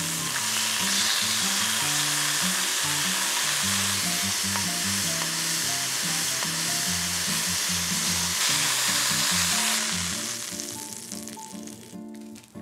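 Thin slices of pork shoulder loin sizzling steadily in olive oil in a frying pan, turned with chopsticks. The sizzle dies away near the end. Soft background music plays underneath.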